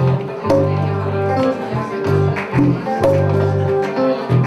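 Live band playing: two electric guitars pick melodic lines over sustained low bass notes, with hand-drum strokes keeping a steady beat.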